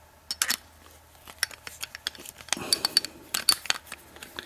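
Steel Phillips screwdriver tapping and scraping on a steel padlock body as it is fitted to the screw: irregular sharp metallic clicks, some with a short ring, a couple shortly after the start and then a denser run through the second half.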